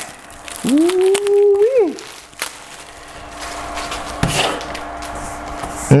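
Clear plastic wrap crinkling and tearing as it is peeled off a new basketball, with scattered small crackles. About a second in, a short held whine-like tone rises at its end and fades.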